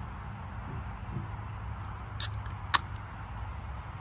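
A beer can's ring pull being opened, making two sharp cracks about half a second apart a little after two seconds in.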